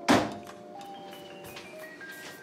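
A short thunk with a brief grunted "uh" at the start, then soft background music of held notes that step down in pitch.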